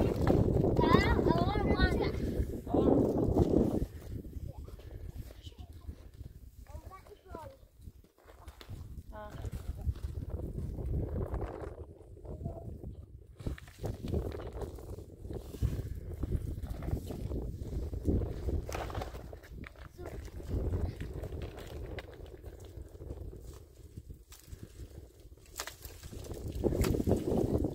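People talking, loudest in the first four seconds and then quieter and on and off, over a steady low rumble.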